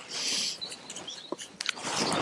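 Paintbrush dabbing a moss-and-yogurt paste onto dry stone wall blocks: a short swish near the start, then a few faint light taps.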